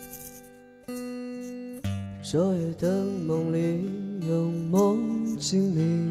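Acoustic guitar played in slow, ringing strummed chords. A man's voice starts singing over it about two seconds in.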